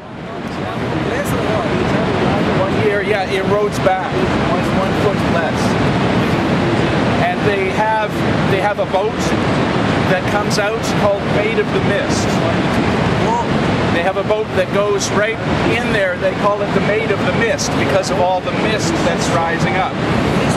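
Steady rushing roar of Niagara Falls, with people talking over it. The roar fades in over the first second or two.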